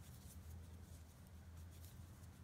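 Near silence with faint, irregular light clicks and rustles of metal circular knitting needle tips and yarn as stitches are worked, over a low steady hum.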